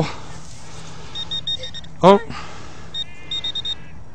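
Handheld metal-detecting pinpointer probe giving quick runs of short high beeps as it is worked in a dug hole, once about a second in and again near the end. The detectorist later suspects the signal is false, a hot rock or a deep nail.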